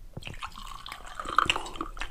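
Soju poured from a green glass bottle into a small glass shot glass: liquid running and splashing into the glass for most of two seconds.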